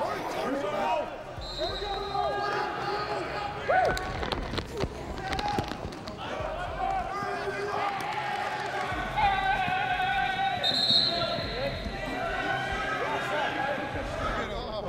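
Football practice field sounds: shouting and chattering voices over repeated thuds and knocks of players and the ball, with a cluster of sharp knocks about four to five seconds in.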